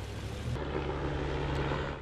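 A motor vehicle driving slowly past close by with its engine running, over steady street noise; about half a second in, the sound settles into a steady low drone.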